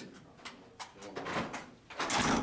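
Hotel room door swinging slowly shut on its closer, with a few faint clicks and knocks.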